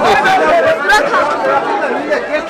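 Speech: a man and a girl talking, with the chatter of a crowd around them.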